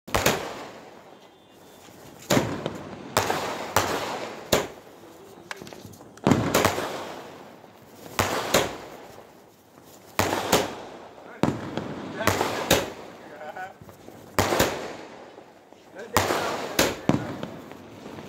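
Multi-shot aerial firework cake (fireshot) firing nonstop: a string of sharp bangs at irregular gaps, sometimes two within a second. Each bang trails off for a second or so.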